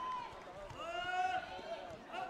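A loud held shout, one cry lasting under a second from about two-thirds of a second in, among other voices in the hall.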